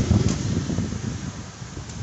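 Wind buffeting the microphone: an irregular low rumble that is strongest in the first second and then fades.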